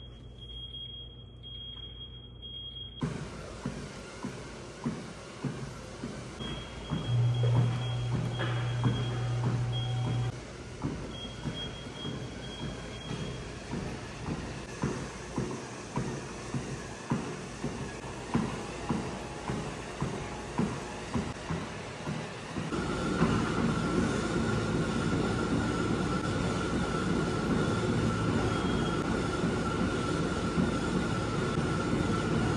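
Treadmill started from its console with high electronic beeps, then its belt and motor running under steady, regular footfalls. About two-thirds of the way through, the running sound gets louder, with a steady whine.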